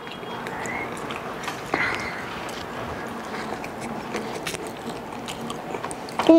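Close-up chewing and biting of singaras, crisp fried pastry snacks, with many small wet mouth clicks over a steady background hiss.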